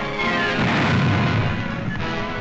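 A heavy artillery shell bursting: a short falling whistle, then a rumbling explosion that swells about half a second in and dies away by about a second and a half, over orchestral music.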